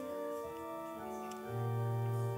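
Organ playing a prelude in long, held chords, with a low bass note coming in about one and a half seconds in.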